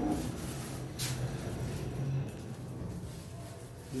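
Kone traction elevator car at a floor: two sharp clicks about a second apart, over a low hum that dies away a little past two seconds in.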